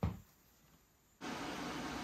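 A short sharp click right at the start, then a near-dead gap, then from just past a second in a steady, even room hiss.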